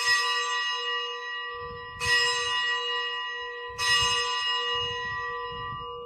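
Consecration bell struck three times, about two seconds apart, each strike ringing on and slowly fading. It is rung at the elevation of the host, right after the words of consecration over the bread.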